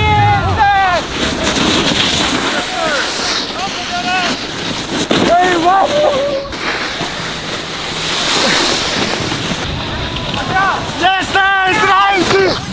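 Wind buffeting the camera microphone and a snowboard hissing and scraping over packed snow during a downhill run, with short shouts over it.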